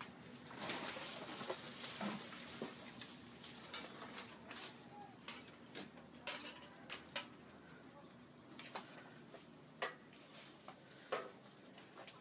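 Leafy branches rustling as they are pushed and pulled, with a scattering of sharp snaps and clicks of twigs and wood.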